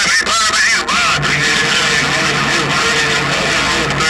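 HR2510 radio's speaker playing an incoming transmission on 27.085 MHz (CB channel 11). Garbled speech comes through heavy static in the first second, then a steady hiss with a low hum.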